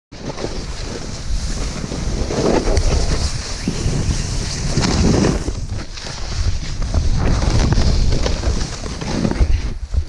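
Wind buffeting an action camera's microphone during a fast snowboard run through powder, with the hiss of the board sliding over snow. The rumble surges and eases, then drops off suddenly near the end.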